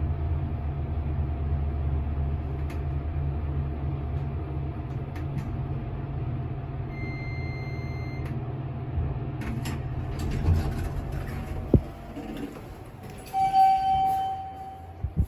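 Traction elevator car running downward with a steady low rumble, which fades as the car slows and stops about ten seconds in. A high beep of about a second sounds partway through the ride, a single knock follows after the stop, and a steady tone starts near the end.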